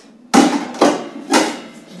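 Stainless steel bowls and pots knocking against each other and being set down on a wooden table: three knocks about half a second apart.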